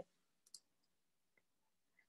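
Near silence, with one faint short click about half a second in and a fainter tick later.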